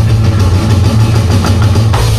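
Loud rock music with drums, played on an electronic drum kit along with a backing track, over a steady low bass drone.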